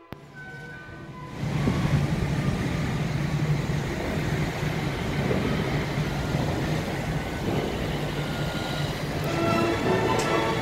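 Steady engine rumble with a constant low hum, setting in about a second and a half in, as vehicles move through a ferry terminal queue. Faint music comes back near the end.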